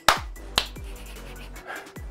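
Two sharp hand claps about half a second apart, the first louder.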